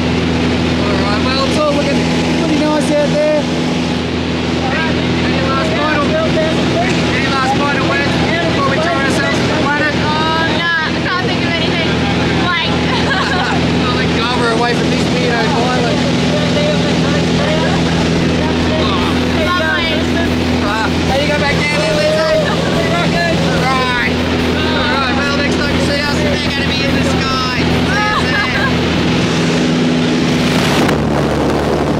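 Steady drone of a single-engine light aircraft's piston engine and propeller, heard from inside the cabin, with people talking over it.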